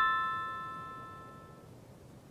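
Background music: a single piano chord ringing out and slowly fading away.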